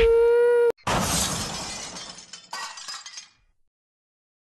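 A short held tone that cuts off abruptly, then a glass-shattering sound effect: a crash of breaking glass that fades over about two seconds, with a second, smaller burst of breaking glass part way through.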